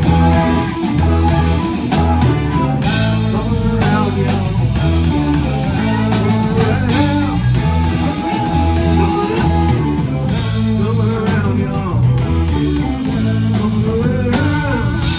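Live rock band playing without a break: electric guitar leading over drum kit, bass and keyboards.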